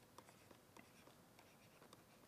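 Near silence with faint ticks and scrapes of handwriting: a few soft, short taps spread through the two seconds.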